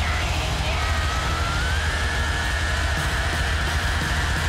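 Live heavy metal band at full volume: one held high note slides up about a second and a half in and then holds, over a steady low drone.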